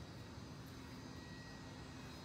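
Faint, steady low background rumble with a light hum and no distinct events.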